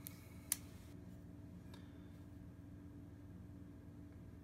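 A single sharp click about half a second in as a Ganzo G7531 folding knife's blade is swung open and its axis lock snaps into place, then a fainter click; otherwise quiet room tone with a faint steady hum.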